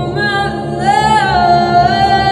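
A woman's solo singing voice into a handheld microphone over a low, pulsing backing track. The voice slides up about a second in and then holds a long note.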